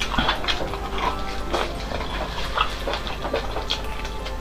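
Close-miked wet mouth sounds of sucking marrow from a soup-soaked bone: irregular slurps, smacks and squelches at the lips, over a steady low hum.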